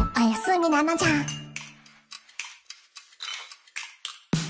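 The close of an anime ending song: a voice sings or speaks a last line over the music, and the final held note fades out about two seconds in. After it comes a scatter of light clinks, like dishes and cutlery.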